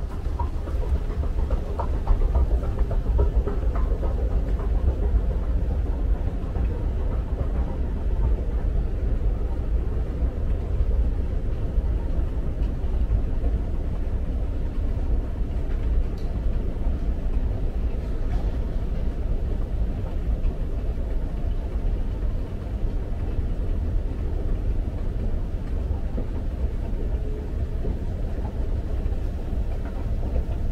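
Escalator running: a steady low rumble from the moving steps and drive machinery, heard from on board while riding down it, starting abruptly as the steps are boarded.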